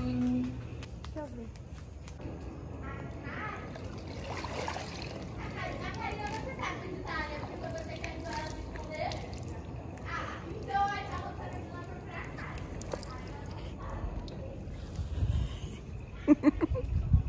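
Quiet, indistinct talking that no words can be made out of, over a low steady background hum.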